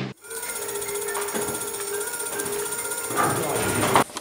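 Electric scooter's brushless hub motor, its failed hall sensor replaced, running under held throttle with a steady tone made of several high pitches. Running quietly at an even, unfluctuating speed, the sign that all three hall sensors now respond.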